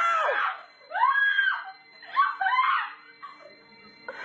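Several high-pitched screams and cries of shock from onlookers: three sharp cries of under a second each in the first three seconds, dying down to faint sounds near the end.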